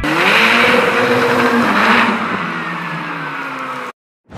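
A high-performance car engine revving: its pitch climbs sharply at the start, holds, then slowly drops as the sound fades, and it is cut off abruptly just before the end.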